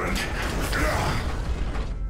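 Sound effects of giant robots in motion: mechanical whirring and metallic creaking, with a deep low rumble underneath.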